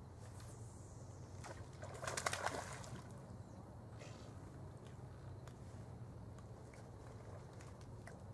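A cast fishing lure landing in the river with a short splash about two seconds in, over a steady low background and a few faint ticks.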